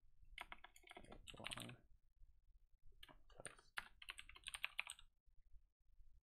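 Faint typing on a computer keyboard: two runs of quick keystrokes, the second starting about three seconds in, with a short pause between.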